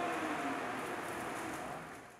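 The faint tail of the stage sound just after the song's final hit: an even hiss with a trace of ringing, fading steadily and cutting off to dead silence just after the end.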